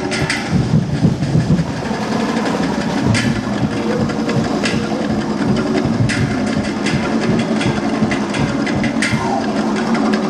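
Festival drum-and-percussion ensemble playing a fast, driving rhythm, with dense rapid drumbeats and sharp accents every second or two.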